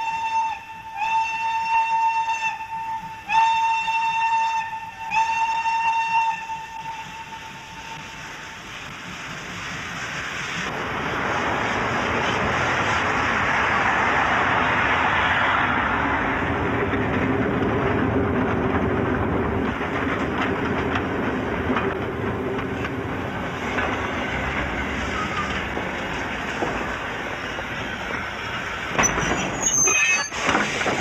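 Train whistle sounding four blasts, the last one longer and fading. Then a train's rolling rumble and wheel clatter swells up and runs on steadily.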